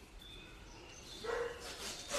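A dog barking: one short bark about a second and a half in.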